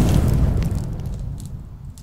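Cinematic logo sting sound effect: a deep boom and rumble with scattered crackles, dying away steadily.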